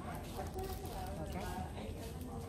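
Faint voices of people talking in the background over a steady low hum.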